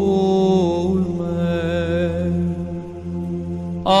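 Slow worship song music between sung lines: long held notes with a light vibrato over a steady low backing. It dips in level about two and a half seconds in, and a louder phrase comes in at the very end.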